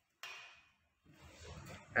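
Bike parts being handled: a short, sudden rustle and clatter about a quarter second in that fades within half a second, then a rougher handling noise building through the last second.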